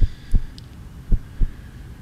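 Heartbeat suspense sound effect under a quiz question: pairs of short, low thuds, the second following the first by about a third of a second, repeating about once a second.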